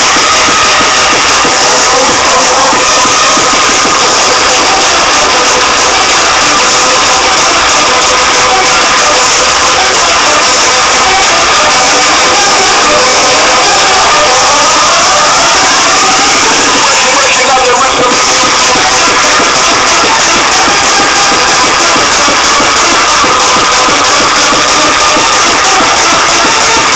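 Hardcore dance music mixed from vinyl on two turntables, loud and dense throughout, with rising synth sweeps around the middle.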